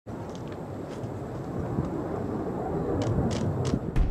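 Steady low rumble of rockets in flight over a city, growing slowly louder, with a few faint crackles.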